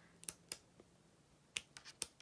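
A few faint, sharp clicks in near quiet: small handling sounds while a card guidebook is leafed through to look up an entry, three in the first second and a quick cluster of three near the end.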